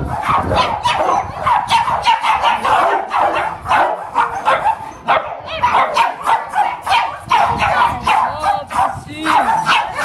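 Several dogs barking in kennels, a dense overlapping run of barks with hardly a gap. A high, wavering whine cuts in twice a little before the end.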